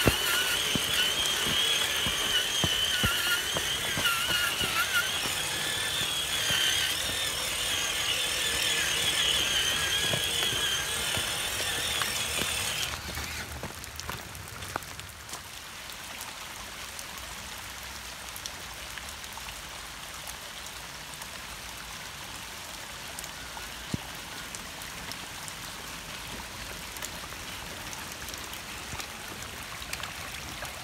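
An RC crawler's electric motor and drivetrain whine, wavering in pitch as it drives through water, and cut off about 13 seconds in. Steady running rainwater runoff continues underneath throughout.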